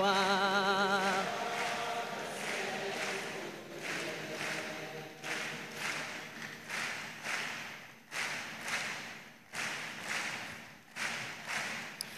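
Church congregation singing a gospel chorus unaccompanied, holding the last note with a wavering vibrato for about a second and a half. The singing then fades to faint voices over a soft, steady beat a little under two a second.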